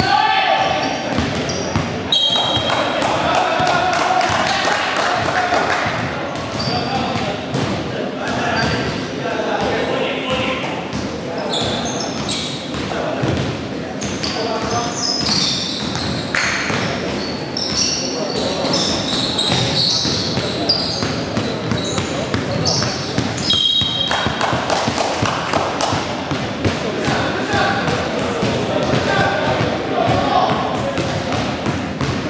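Indoor basketball game: a ball bouncing on a hardwood court, with brief high squeaks from shoes on the wooden floor twice. Players' voices call out indistinctly, and everything echoes in the large gym.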